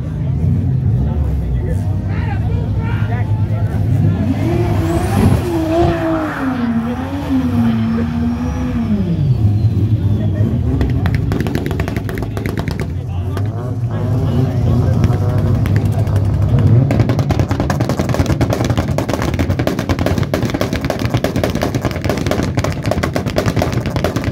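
Car engines idling, with one engine revved up and down several times for about five seconds a few seconds in, then settling back to idle.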